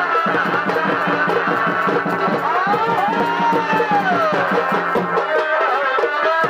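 Chhau dance music: fast, dense drumming under a shehnai melody whose long notes slide up and down in pitch.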